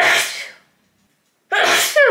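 A woman sneezing twice, the first right at the start and the second about a second and a half later, each a loud, short burst.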